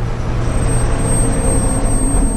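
Low, steady rumbling drone from the soundtrack, starting suddenly, with a faint thin high whine above it: ominous underscore.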